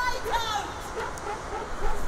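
A dog whining and yipping in a run of short cries that bend up and down in pitch, over a low rumble.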